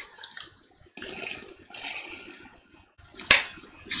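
A tobacco pipe being lit: a series of soft breathy puffs as the lighter flame is drawn down into the bowl, then a single sharp click about three seconds in.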